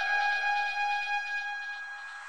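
Electronic dance music breakdown with no beat: a single held synth tone, reached after an upward pitch sweep, fading away.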